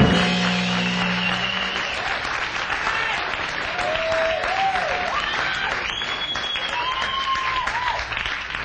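A rock band's final chord rings out with guitars and drums and cuts off within the first two seconds. A small club audience then claps, with a few pitched calls rising and falling over the applause. The recording is a dull-sounding live tape.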